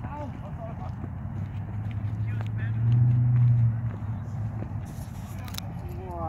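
Distant shouts and calls of players during a pickup soccer game, with a few faint knocks, over a steady low hum that grows louder for about a second around the middle.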